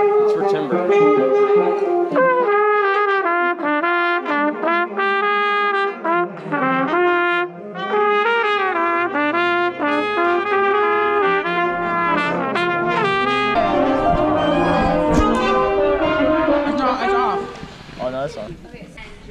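Two trumpets playing runs of notes together close to the microphone during a jazz band sound check. About three-quarters of the way through, the sound turns denser and noisier, with low thumps under it, before it drops off sharply near the end.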